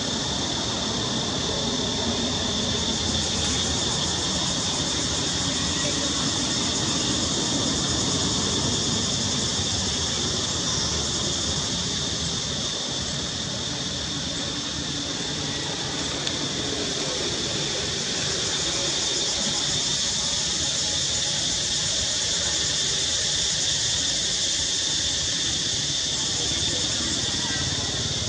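A steady, high-pitched chorus of cicadas buzzing without a break.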